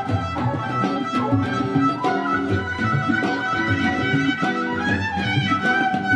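A live fusion quartet of electric violin, cello, tabla and electric guitar playing. The electric violin carries a sustained, gliding melody over the cello's low notes, with steady tabla strokes keeping the rhythm.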